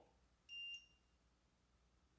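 Near silence broken by one short, high-pitched electronic beep about half a second in.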